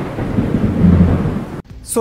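Thunder rumbling over rain as an intro sound effect, fading and then cutting off abruptly near the end, followed by a brief high hiss.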